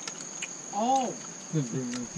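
Insects keep up a steady high-pitched drone. About a second in, a person gives a short hum with a rising-then-falling pitch, which is the loudest moment.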